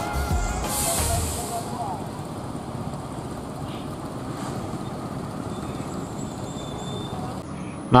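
A stationary coach bus running, with a low engine rumble and a short hiss about a second in, then steady ambient noise.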